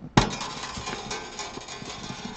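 A sharp click as the shimmed saddle is pressed down into an acoustic guitar's bridge slot, followed by a busy run of small clicks and scrapes from the saddle and strings being worked into place, with the strings ringing faintly.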